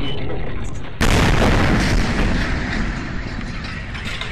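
Shock wave from the Chelyabinsk meteor's air burst arriving as a sudden loud boom about a second in, then rumbling and fading away over the next couple of seconds.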